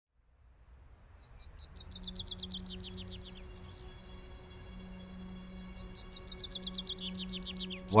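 A songbird singing two rapid trills of quick, high, downward-sweeping notes, about ten a second. The second trill starts about six seconds in. Under it runs a faint, steady, low held tone.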